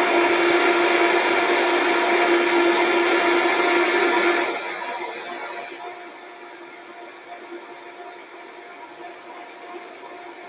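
Countertop blender running, blending oats and water into oat milk: a loud, steady motor whine that becomes much quieter about four and a half seconds in and keeps running at the same pitch.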